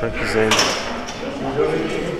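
Voices talking, with one sharp clank about half a second in, in the echo of a large gym hall.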